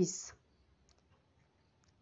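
A woman's voice finishes a word ending in a hiss in the first half-second, then near silence broken by a few faint clicks.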